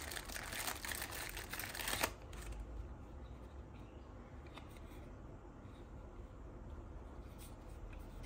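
A small clear plastic bag crinkling and rustling as a part is pulled out of it, stopping suddenly about two seconds in; after that only a few faint clicks as the small plastic terminal cover is handled.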